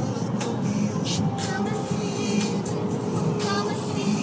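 A song playing on the car stereo, with a beat, over the steady road and engine noise of the car moving at motorway speed inside the cabin.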